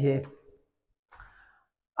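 The last word of a man's speech, then near silence broken by one faint, short breath about a second in.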